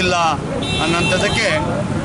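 A man speaking Kannada into reporters' microphones, with street traffic noise behind and a brief high steady tone about a second in.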